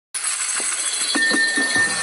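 Jingling sleigh bells open a festive Christmas music track, with a few soft beats coming in about halfway and a held high note near the end.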